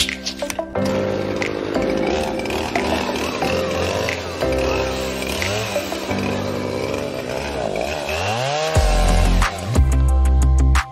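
Background music, with a chainsaw running under it as it cuts the big knots off a log.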